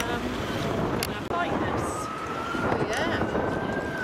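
Wind buffeting the microphone at a marina quayside, with people talking in the background. From about a second and a half in, a faint high tone slowly rises in pitch.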